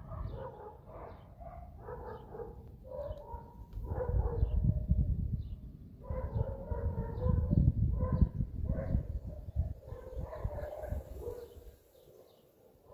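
Distant thunder rumbling, swelling to its loudest about four seconds in and again around seven to eight seconds, while a dog barks over and over.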